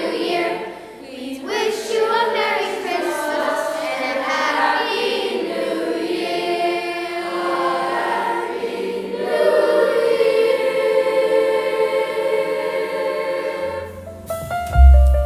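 Youth choir singing a medley of Christmas carols, closing on a long held chord near the end.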